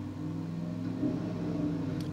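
A steady low machine hum with several constant pitches, running unchanged throughout.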